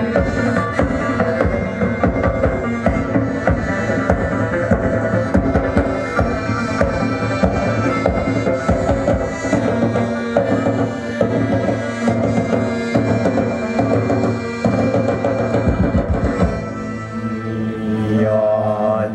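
Traditional ensemble music accompanying a dance: drums beating a busy rhythm over sustained melodic tones. The drums drop out near the end, leaving the held tones.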